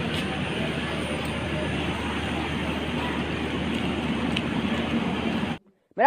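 Steady rumble and low hum of a passenger train standing at a station platform with its engine running. It cuts off abruptly near the end.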